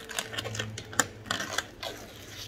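Sprayed-on rubber coating (FullDip/Plasti Dip) being peeled off a car's painted body by hand, a run of small crackling clicks as the film comes away in one sheet, the sharpest click about a second in.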